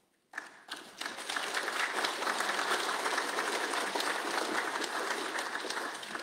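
Many people applauding together, the clapping building up over the first second or two and then slowly tapering off near the end. It is the applause that greets the close of a speech.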